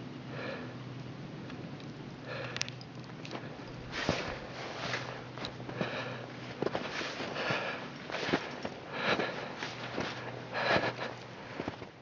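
A climber's heavy breathing at altitude, hard breaths in and out roughly once a second, coming quicker and stronger from about four seconds in. A faint steady low hum runs underneath.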